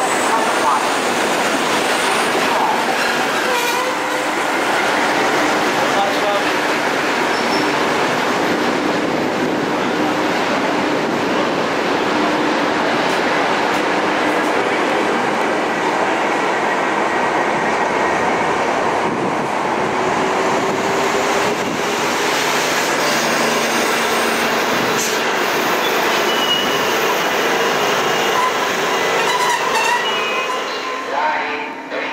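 Trains passing close by on the station tracks: a diesel locomotive and its coach, then a locomotive-hauled passenger train, with steady rolling noise of wheels on rails throughout. Faint wheel squeal can be heard.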